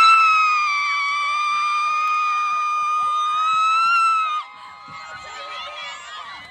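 A woman's long, high-pitched cheering scream, held steady for about four seconds and then cut off sharply, with other spectators' voices shouting more faintly around it.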